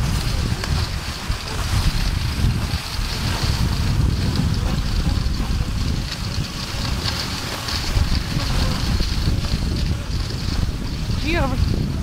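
Wind buffeting the microphone in a steady low rumble while being towed on skis, over an even hiss from skis gliding across snow.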